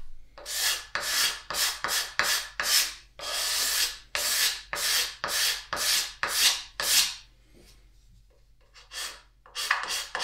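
A metal hand file scraping back and forth over the shaped edge of a wooden vise jaw, about two rasping strokes a second, smoothing the coping-saw cut of the decorative profile. The strokes stop for about two seconds, then quicker strokes start again near the end.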